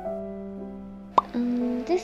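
Soft piano background music. About a second in there is a single short pop, a phone notification sound for an incoming comment. A woman's voice then starts with a drawn-out "ermm" as she begins reading the comment.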